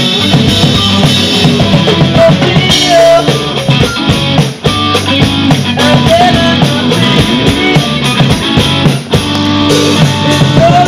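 Live band playing an instrumental stretch with drum kit and guitar, and no singing. The music drops out for a split second twice, about halfway through and again near the end.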